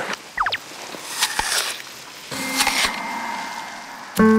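Crunchy bites and chewing of a fresh apple: two crisp bites, the first about a second in and a longer one past the middle. A few quick falling whistle-like tones come just before them.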